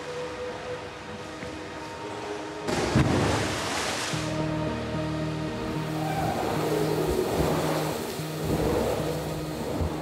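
Background music with a steady, repeating pattern, and a loud rushing splash of water beginning a little under three seconds in and fading over about a second and a half, as of a body plunging into a pool heard from under the water.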